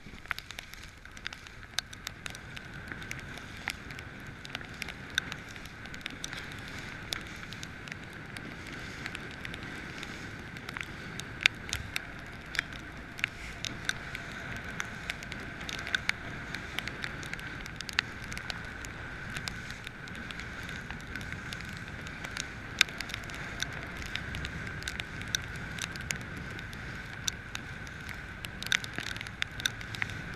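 Wind and choppy water rushing past a moving boat in strong wind, with many sharp ticks and slaps of spray and chop hitting, over a steady mid-pitched hum.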